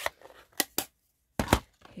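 Several sharp plastic clicks and knocks as a stamp ink pad case is closed and set down on the tabletop, the loudest about a second and a half in.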